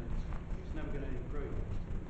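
Indistinct speech from across a meeting room, over a steady low rumble of room noise.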